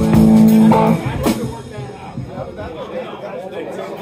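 A live band's amplified instruments hold one chord for about a second and cut off sharply, then stage talk and bar crowd murmur.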